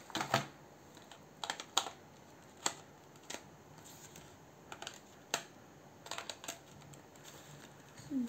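Irregular light clicks and taps of wax crayons knocking against each other and their cardboard box as they are handled and picked through.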